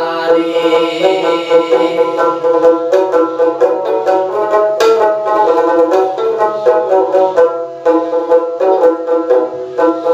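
Dotara, a long-necked folk lute with a small skin-covered body, playing a quick, rhythmic run of plucked melody notes as an instrumental passage in a Bhawaiya folk song.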